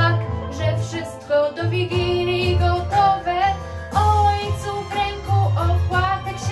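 A young female voice singing a Polish Christmas pastorałka over a backing track with a low bass line.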